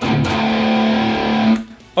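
Early-'80s Vester MOD-800 semi-hollow electric guitar through a Boss Katana amp with its built-in MT-2 Metal Zone distortion: one distorted chord struck and held for about a second and a half, then cut off.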